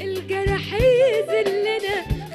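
A woman singing an Egyptian sha'bi song live, her melody line bending and ornamented, over band accompaniment with a few drum strokes.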